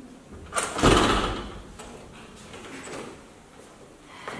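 A front door being opened: a loud clatter about a second in, followed by a few soft knocks.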